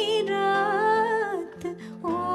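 A woman sings a long, wavering held line to acoustic guitar accompaniment. Her voice drops out about one and a half seconds in, leaving the guitar briefly on its own.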